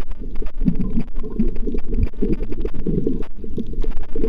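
Muffled underwater rumble and sloshing of water against a camera held below the surface, with scattered faint clicks.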